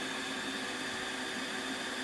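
Steady background hiss with a faint low hum, the recording's own noise floor while nothing else sounds.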